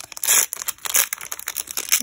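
A foil Pokémon card booster pack wrapper being torn open by hand, crinkling and crackling in a run of short rustles, the loudest near the start.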